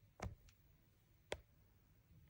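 Near silence with two faint, short clicks about a second apart.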